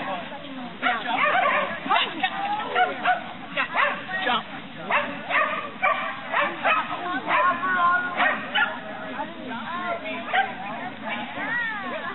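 A dog barking and yipping over and over, many short high calls in quick succession.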